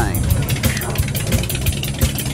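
A motorcycle engine running steadily with an even, fast pulse, mixed with background music.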